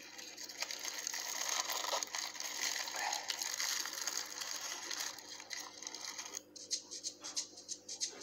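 Plastic bag packaging crinkling and rustling as it is handled and unwrapped: a dense, crackly rustle for about six seconds, then quieter and more broken.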